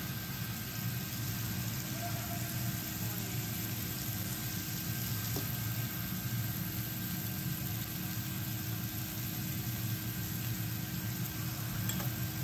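Chicken, tofu and bean sprouts sizzling on a flat-top teppanyaki griddle, steady throughout, over a constant low hum.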